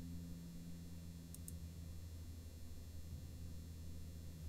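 Faint room tone: a steady low electrical hum, with two quick faint clicks about a second and a half in.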